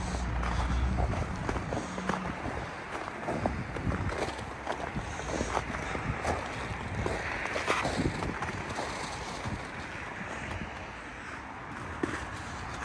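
Wind on the microphone outdoors, with scattered short rustles and knocks of someone moving along a chain-link fence.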